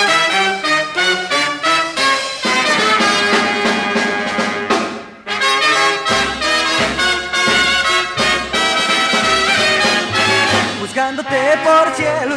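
A 1950s dance band plays the instrumental introduction to a song, with trumpets and trombones to the fore. The music drops out for a moment about five seconds in, then carries on.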